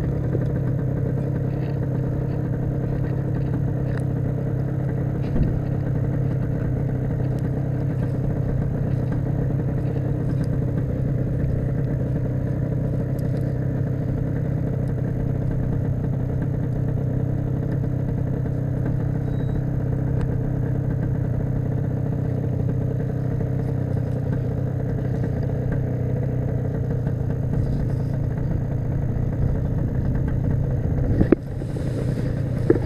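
Paramotor engine idling steadily, an even low hum that holds without change.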